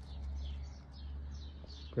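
Faint small birds chirping in the background over a low steady hum.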